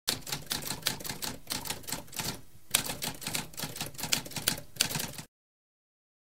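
Typewriter keys typing in a rapid run of clicks, with a short pause about two and a half seconds in, stopping abruptly about five seconds in.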